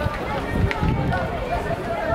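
Indistinct voices of people talking close to the microphone, over a steady low rumble of outdoor stadium ambience, with one sharp click about two-thirds of a second in.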